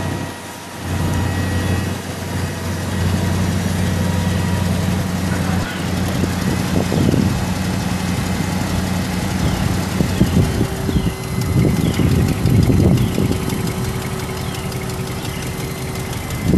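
The 2001 Dodge 3500's 5.9-litre gas V8 idling steadily, on a truck listed with an exhaust leak. The sound dips briefly about half a second in, and grows louder and uneven for a few seconds past the middle.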